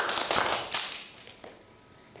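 Applause from a small audience in a classroom: a dense patter of hand claps that dies away about a second in, leaving faint taps and shuffling.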